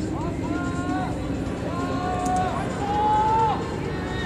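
Trackside spectators shouting long, drawn-out cheers at runners passing in a pack, several voices one after another, the loudest about three seconds in, over steady crowd and track noise.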